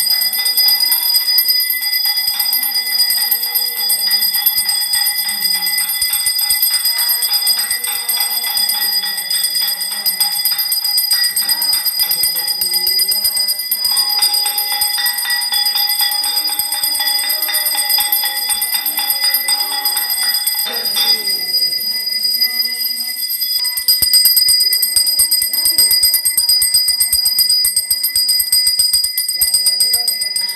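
Temple bell rung rapidly and without pause during aarti, a steady metallic ringing made of fast repeated strikes.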